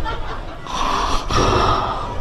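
A person's sharp, breathy intake of breath in two quick parts, about a second in, between stretches of talk.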